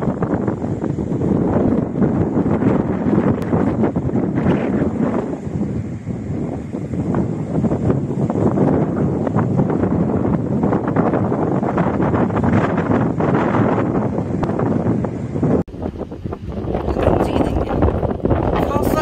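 Wind buffeting a handheld phone microphone: a loud, steady, rumbling roar, broken off briefly about sixteen seconds in before it picks up again.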